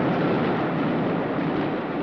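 Steady noise of a train standing at or moving along a station platform: a continuous rumbling hiss with no breaks.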